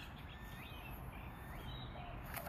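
Faint bird chirps, a few short rising notes, over steady outdoor background noise.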